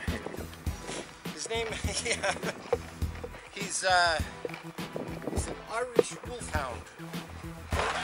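A dog whining in several short calls that rise and fall in pitch, the strongest about four seconds in, with sharp knocks and handling noise around them.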